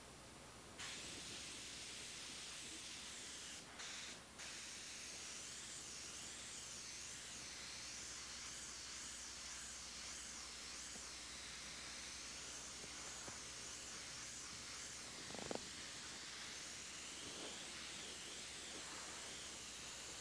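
Airbrush spraying paint onto canvas: a faint, steady hiss of air that starts about a second in, breaks off briefly twice around four seconds in, then runs on. A single short tap about fifteen seconds in.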